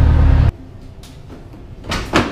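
A steady low background hum stops abruptly about half a second in at an edit. A much quieter room tone follows, with a brief rushing noise at the very end.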